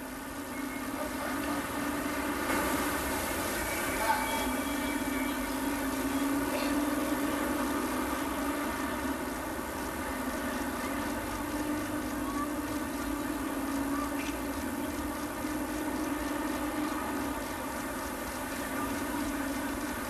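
Air-raid sirens and vehicle horns sounding together in one long, steady, slightly wavering tone: the signal for the nationwide three minutes of silence in mourning for the earthquake dead.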